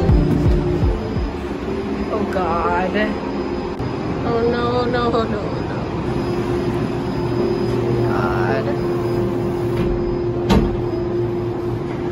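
Steady hum of cable car station machinery heard from inside a gondola cabin at the platform, with a few brief bursts of voices in the background and one sharp knock near the end.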